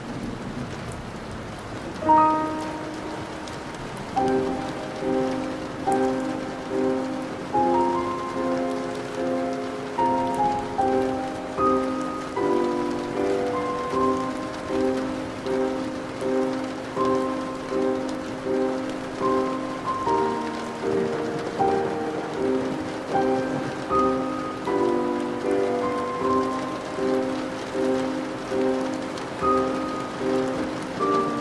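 Steady rain falling, with soft music over it: a phrase of pitched notes comes in about two seconds in and then repeats as an even, pulsing pattern of notes, a little more than one a second.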